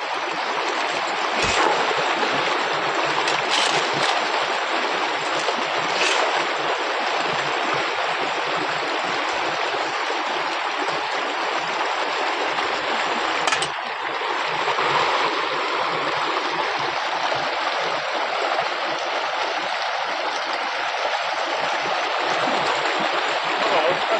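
Shallow mountain stream rushing steadily over a gravel bed, with a few short, sharp knocks of a shovel against stones in the water.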